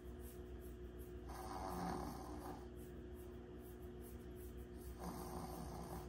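Small Yorkshire terrier breathing noisily while held and petted, in two faint breathy spells about a second in and again near the end.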